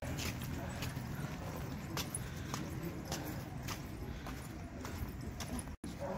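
Footsteps of someone walking on a paved path, a light step about twice a second over a low rumble. The sound cuts out for a moment near the end.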